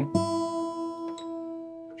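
Acoustic guitar's open high E string plucked once, ringing in unison with the same E just played at the fifth fret of the B string, the two notes compared to tune by ear; the note rings on and slowly fades.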